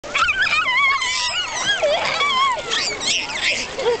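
A baby squealing in high, wavering pitches, with splashing water around the middle.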